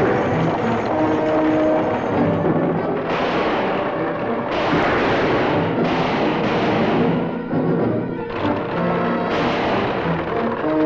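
Dramatic orchestral chase music over the clatter of a galloping horse team and stagecoach, with several sudden loud gunshots from about three seconds in.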